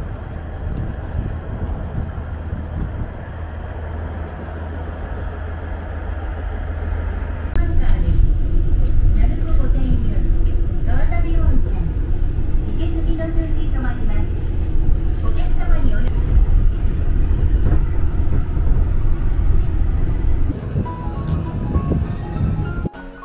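Low rumble of a diesel railcar, steady at first, then clearly louder from about seven seconds in as the train gets under way, with shifting higher tones over the rumble.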